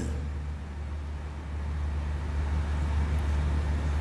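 A steady low hum under an even background rush, with no speech, during a pause in a talk.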